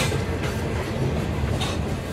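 Freight cars rolling over a girder railway bridge: a steady low rumble broken by a few sharp wheel clacks, one at the start, one about half a second in and one near the end.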